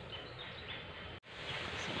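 Steady outdoor background noise with a few faint, short bird chirps. The sound drops out abruptly for an instant a little over a second in.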